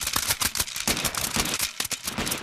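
Loud, dense, irregular crackling that starts abruptly out of silence.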